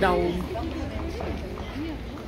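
Voice-over speech ending a word at the start, then faint voices of people talking in a crowd over a low steady hum.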